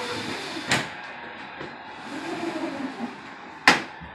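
Stowaway retractable screen door being drawn across a doorway: a sliding rush of the mesh and frame, with a click about a second in and a sharp clack near the end as the screen's bar meets the door jamb.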